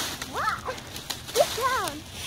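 Footsteps crunching through dry leaf litter and twigs, with two short vocal calls that each swoop up and then down in pitch.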